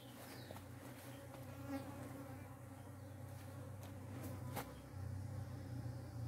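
Faint, low, steady buzzing of insects, with a single soft click about four and a half seconds in.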